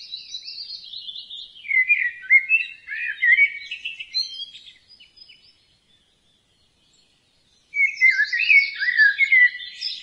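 Songbird singing: a rapid, warbling phrase of chirps, then a pause of about three seconds, then another phrase near the end.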